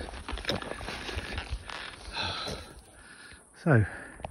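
Footsteps crunching irregularly on the loose rock and gravel of a rocky trail, with a hiker's breathing.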